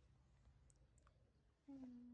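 Near silence with a few faint clicks. Near the end, a low steady hummed note begins.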